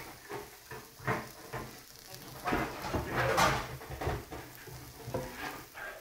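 Beyond Steak plant-based tips frying in oil in a cast iron skillet: a steady sizzle with a few louder clatters.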